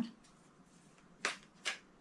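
Tarot cards being handled as one is drawn from the deck: two short, sharp card flicks about half a second apart, a little past the middle.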